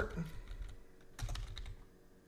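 Computer keyboard typing: a quick run of keystrokes a little over a second in, as a single word is typed.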